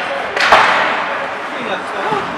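Ice hockey play along the boards: one sharp crack of the puck being struck about half a second in, echoing through the arena, with players shouting over the scrape of skates on ice.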